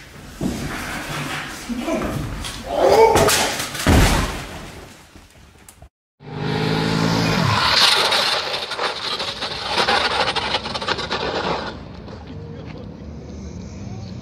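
A heavy thud about four seconds in. Then a motorcycle engine whose pitch drops as the bike goes down, followed by several seconds of the bike sliding and scraping on its side across asphalt.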